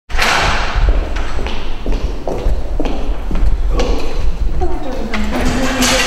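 Handling noise from a handheld camera being moved: a heavy low rumble with a string of knocks and thumps every few tenths of a second. A person's voice comes in near the end.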